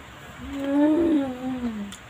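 A woman's closed-mouth "mmm" of enjoyment while chewing food: one long hum that rises slightly and then falls in pitch, lasting about a second and a half.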